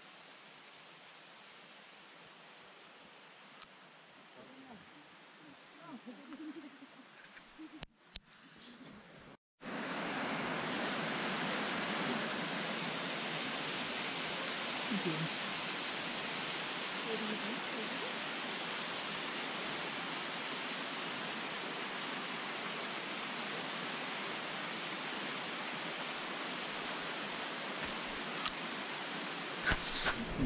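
A waterfall's steady rush, loud and even, cutting in sharply about nine seconds in after a brief dropout. Before that there is a fainter, even hiss.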